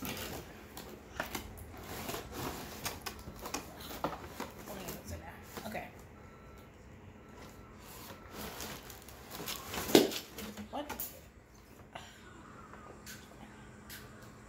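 Cardboard box being handled and opened: repeated rustling, scraping and tapping of cardboard and packaging, with one louder thump about ten seconds in.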